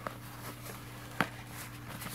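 Hands handling an opened zippered headphone carrying case, with one sharp click about a second in, over a steady low hum.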